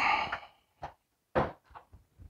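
Handling noises on a desktop PC tower case: a short scrape, then a click and a sharper knock, with a couple of faint ticks.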